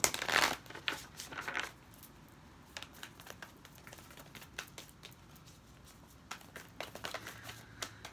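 A deck of oracle cards shuffled by hand: a loud riffling burst at the start and a few more over the next second or so, then light scattered clicks and taps of the cards, with a short flurry of them near the end.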